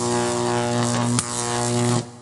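A production-company logo sound sting: a sustained droning chord with a bright hiss above it and one sharp hit just past a second in. It drops away at the end.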